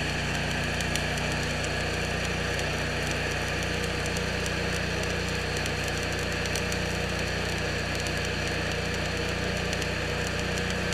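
Electric arc welding: the arc crackles and sizzles continuously as a bead is laid, with a steady low hum underneath.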